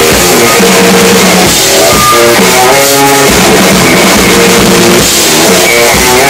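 Rock band playing loud live: electric guitar holding sustained notes that change every half second or so, over a drum kit with cymbals.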